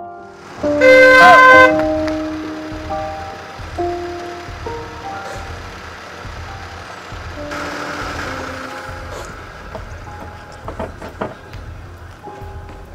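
A car horn sounds once, for about a second, over soft piano background music. A few sharp clicks come near the end.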